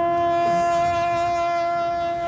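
A military bugle holds one long, steady note, the sustained closing note of a call after a step down from a higher note.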